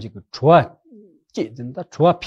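Speech only: a man talking, apparently in Tibetan.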